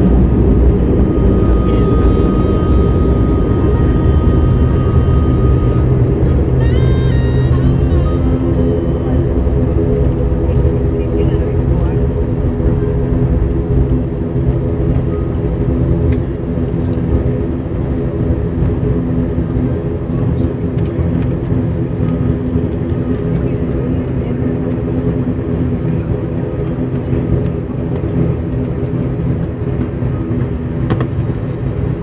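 Cabin noise of an ATR 72-500's twin turboprop engines and propellers on the landing roll: a steady drone of several low tones that slowly gets quieter as the aircraft slows down the runway.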